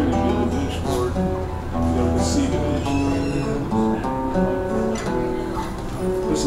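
Acoustic guitar playing a chord progression: chords strummed and plucked, with notes ringing and the chord changing every second or so.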